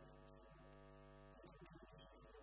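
Faint electrical mains hum, with a quiet pitched tone held for about a second and a half before it breaks off.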